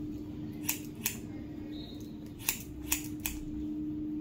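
Hair-cutting scissors snipping through hair: five crisp snips, two in the first second or so and three close together in the second half.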